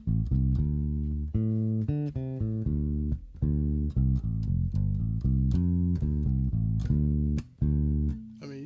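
Electric bass with a low B string played solo, a steady run of single plucked notes, about two to three a second, moving through the D minor pentatonic notes (F, G, A, C, D).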